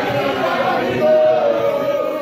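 A congregation singing a praise song together, led by a man's voice, many voices overlapping in a continuous chorus.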